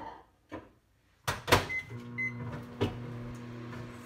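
Microwave oven being loaded and started: several clunks of the door and dish, the loudest about a second and a half in, then two short keypad beeps. The oven then starts up with a steady hum as it begins heating the food.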